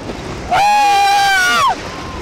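Riders on a wooden roller coaster screaming. A long high scream starts about half a second in, holds for about a second and falls away, over wind noise on the microphone and the rumble of the coaster train.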